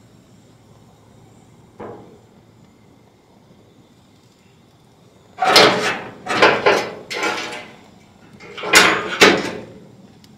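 Raw chicken pieces set down with metal tongs on a preheated gas grill's grates: five short, loud bursts of sizzling and metal scraping, starting about halfway through.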